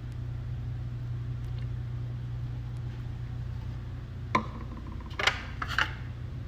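A steady low machine hum, with a sharp click about four and a half seconds in and a brief clatter of light knocks near the end.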